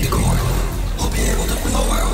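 Film soundtrack excerpt: a loud, steady low rumble of sound effects with voices over it.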